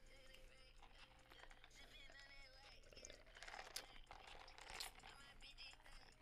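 Very faint, muffled voices talking in the background, with two sharp clicks a little past halfway.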